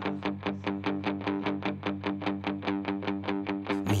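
Guitar picking a steady run of even, short notes, about eight a second, on a few repeated pitches: an instrumental passage of a rock song.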